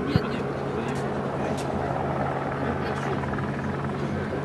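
Beriev Be-200 amphibious jet in flight, its twin turbofan engines making a steady, continuous jet noise with a low hum. There is a brief knock just after the start.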